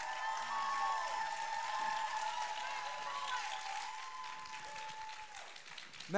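Audience applauding, with high sustained cheering voices held above the clapping; it fades away near the end.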